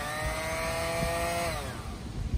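Electric orbital sander briefly switched on and run unloaded in the air: its motor whine holds steady, then winds down and falls in pitch near the end.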